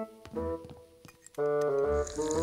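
Background music: keyboard chords over low bass notes, with a louder held chord coming in about one and a half seconds in.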